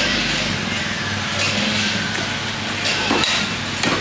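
A few short knocks of a butcher's cleaver on a wooden chopping block, over a steady din of background noise.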